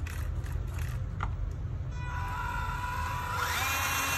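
Electric drive motor and gears of an MN82 Pro RC truck whining as its wheels are run with the truck held off the ground, starting about halfway through as a steady whine and growing louder near the end. A low hum underlies the first half.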